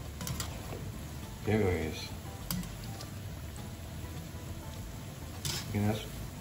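Yuca and malanga fritters deep-frying in hot oil, a steady sizzle, with a few light clicks of a wire spider skimmer against the metal pan as they are turned. A short voice sound comes about a second and a half in and again near the end.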